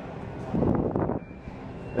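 A brief, unclear stretch of a man's voice about half a second in, over steady store background noise.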